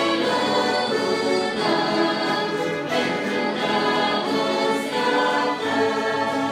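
Church string orchestra, led by violins, playing a slow piece in long held chords that change every second or so.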